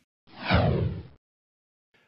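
A whoosh sound effect, of the kind used for a broadcast segment transition, sweeping downward in pitch. It starts about a quarter second in and lasts about a second.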